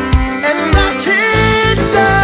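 Background music: a song with a steady drum beat under a melodic line.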